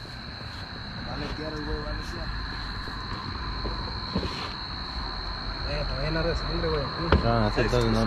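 Men talking quietly in the background over the steady high-pitched trill of night insects, with the voices growing louder near the end.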